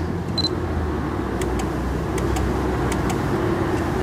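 A Canon PowerShot SX40 HS gives a short high beep about half a second in, then a few faint shutter clicks as it takes a three-shot auto exposure bracketing burst. A steady low rumble runs underneath.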